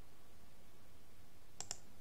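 A computer mouse button click, heard as two sharp clicks close together near the end, over a faint steady hum.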